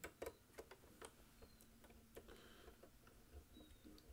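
Faint, irregular ticks and clicks of a screwdriver turning the small screw that secures an M.2 SSD in the PS5's expansion slot, a few louder clicks near the start.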